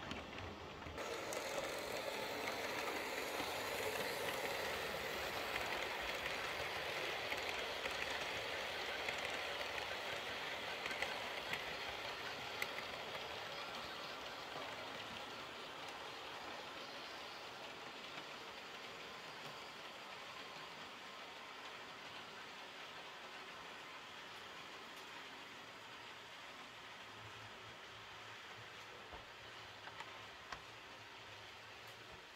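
H0-scale model trains running on the layout's track. It is purely mechanical wheel-and-motor running noise, since the locomotive has no sound module. The steady rolling rumble sets in about a second in and grows gradually quieter, with a few faint clicks over the rails.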